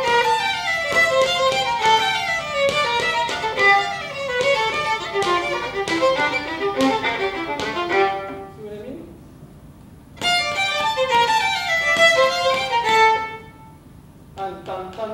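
Two violins playing a quick passage of running notes together. They break off about eight seconds in, start again about two seconds later, and stop near the end.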